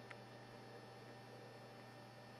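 Near silence: a low, steady electrical hum in the room tone, with one faint click just after the start.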